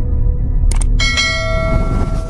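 Intro sound design over a deep, steady bass rumble: a short sharp crackle, then a bell struck about a second in that rings on with several steady tones.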